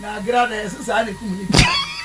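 A person talking quietly, with one sharp knock about one and a half seconds in.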